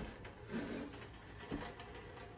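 Ultrasonic cleaner running just after being started, a low steady buzzing hum from its tank of alcohol, with a click right at the start.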